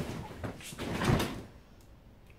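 A large cloth bed sheet being swung and flapped, rustling swishes: a short sharp one at the start and a longer one peaking about a second in.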